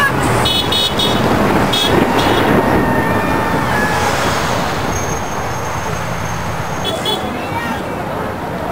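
Cars passing on a busy road with short car-horn toots: quick runs of beeps near the start, again around two seconds in and near the end, and a longer held tone in the middle, over a steady rush of traffic.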